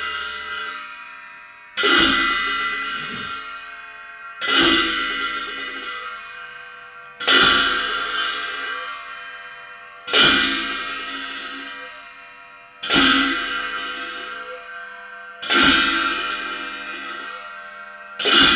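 Large hand cymbals struck together in a slow, even beat, six crashes about two and three-quarter seconds apart. Each crash rings on and fades slowly until the next.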